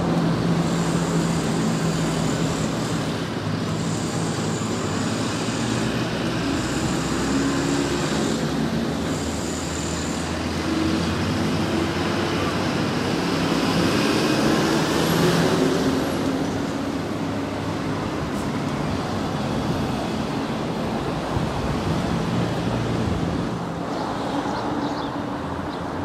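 Steady motor-traffic noise with a low engine hum, swelling as a vehicle passes about halfway through. A faint high tone comes and goes four times in the first ten seconds.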